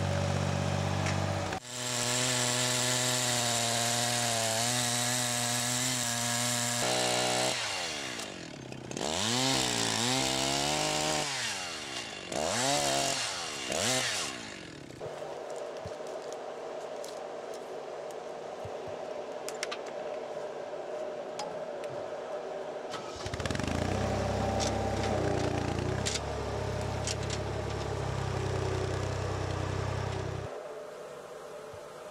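Chainsaw cutting a tree at full throttle, then revved up and down several times before dropping back to a quieter idle around halfway. A lower engine hum is heard at the very start and again in the last seven seconds.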